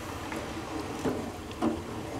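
A ladle stirring near-boiling water with dissolving palm sugar in an aluminium pot on a gas stove, over a steady low hiss of the burner and simmering water, with a few faint soft knocks.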